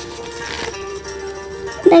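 Soft background music with steady held notes and a plucked-string sound, and a brief paper rustle of a book page being turned about half a second in.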